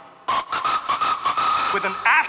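Gabber (hardcore techno) track: after a brief drop-out, a harsh, noisy distorted synth layer comes in with a steady high tone running through it and a rapid stutter. Near the end a sampled male voice says "with an".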